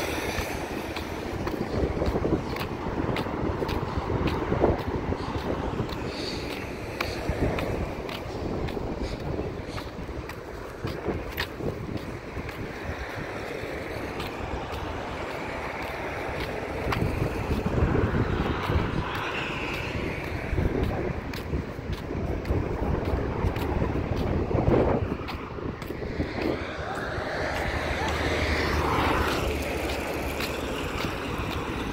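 Wind blowing on the microphone, with the noise of light road traffic passing on the new road.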